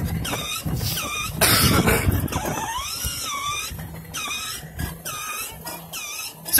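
Music with a short repeating phrase playing from a child's battery-powered ride-on Mercedes-Benz toy car, over the hum of its small electric motor and plastic wheels rolling on asphalt. A short laugh comes about two seconds in.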